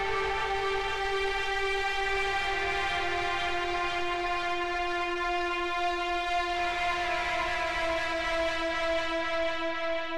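A sustained, horn-like chord of several steady tones over a low rumble, in an electronic instrumental track. Some of the tones slide down in pitch about two seconds in, and again about six and a half seconds in.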